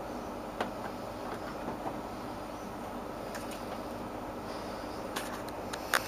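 Steady electrical hum with a few faint clicks, a cluster of them near the end, while an 80 W mercury vapour lamp on a low-power ballast strikes and lights.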